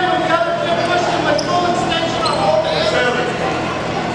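Indistinct voices of people in a large gym, echoing, with a basketball bouncing on the hardwood court.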